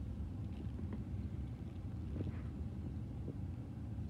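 A steady low background rumble with a few faint, short crinkles and taps as aluminium foil is folded over a hair section with a comb.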